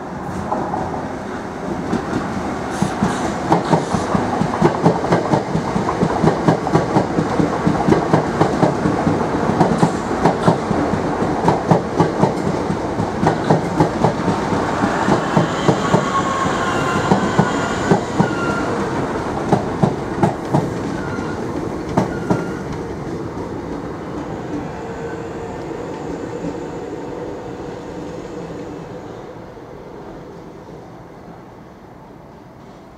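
Southeastern Class 465 Networker electric multiple unit running past, its wheels clattering over rail joints and points in a quick series of clicks, with brief wheel squeals past the middle. The sound fades over the last few seconds.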